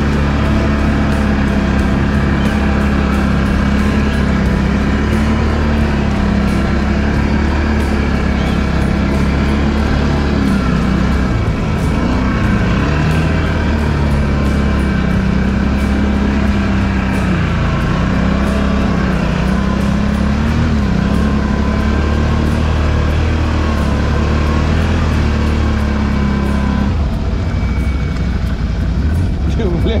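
Can-Am ATV engine running under load while wading through deep water, its pitch rising and falling with the throttle; near the end the engine note drops as the throttle is closed.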